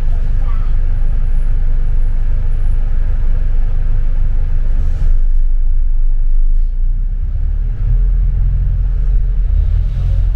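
A double-decker bus's engine and running gear rumble low and steady, heard from the upper deck as the bus drives. The rumble swells about halfway through and again near the end, with a short hiss about halfway.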